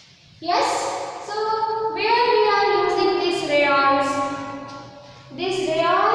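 A class of children's voices reciting aloud together in a drawn-out, sing-song chant, with a brief pause before a new line starts near the end.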